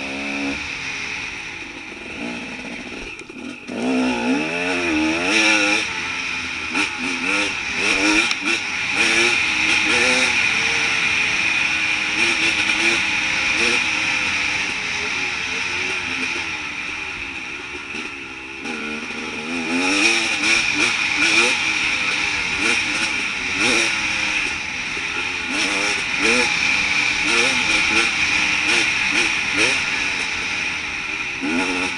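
Off-road enduro motorcycle engine being ridden hard along a rough trail, heard close from the bike itself. The revs keep rising and falling as the throttle opens and closes, climbing sharply about four seconds in and again near twenty seconds. Knocks and rattles come from the bumps.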